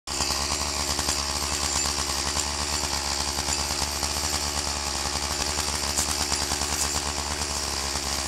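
Chainsaw idling steadily, an even, fast-pulsing motor sound with no revving.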